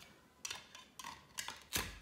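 Plastic toy knife clicking and tapping against a plastic velcro toy pizza as it is cut into slices: about five light clicks, the loudest near the end.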